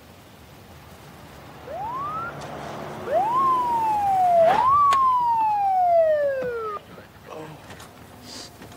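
Police car siren giving three short wails. The first is a quick rising whoop, and the next two each rise sharply and then fall slowly. The siren cuts off suddenly near the end.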